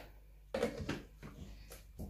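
Plastic blender lid being fitted onto the jar: a sudden knock about half a second in, then several lighter clicks.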